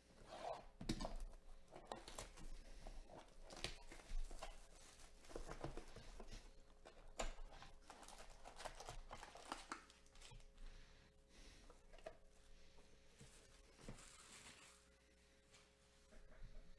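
Plastic shrink wrap being torn and crinkled off a trading-card hobby box, then the cardboard box and its foil card packs handled, in faint, irregular crackles and rustles that die away near the end.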